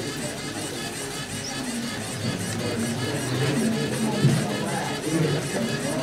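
Music playing steadily, with a murmur of voices in the room.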